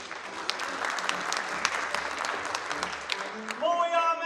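Theatre audience applauding, a dense patter of sharp claps that dies away a little after three seconds in as voices from the stage take over.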